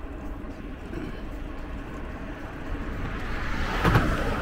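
Steady wind and road rumble on the microphone of a bike-mounted camera while riding. A rush of noise swells over the last second and peaks sharply near the end as a vehicle passes close by.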